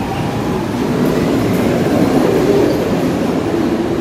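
Subway train running on the tracks through an underground station, a steady loud noise of wheels on rail with no let-up.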